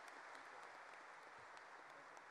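Faint applause from a large audience after a speech ends: a low, even patter of many hands clapping.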